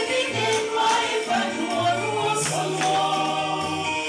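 Church choir singing a hymn in several voice parts, with held low bass notes underneath.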